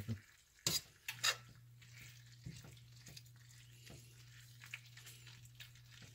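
Metal tongs clicking against a cast iron skillet a few times in the first second and a half as bacon is moved, over a faint sizzle of cold-started bacon cooking in the water it is releasing. A low steady hum comes in about a second in.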